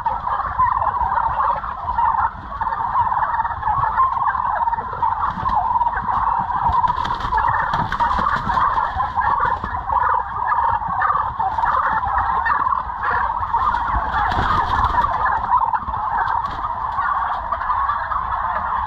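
A large flock of white domestic turkeys calling all at once, a dense, constant chatter of overlapping calls with no pause.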